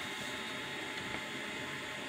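Steady low background hiss of room tone, with no distinct sound event.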